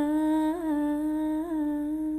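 A woman's voice holding one long sung note, unaccompanied, with small ornamental turns in pitch about half a second in and again near the end.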